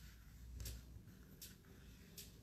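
Near silence with two faint, brief rasps of sewing thread and felt being handled as felt petals are gathered together by hand.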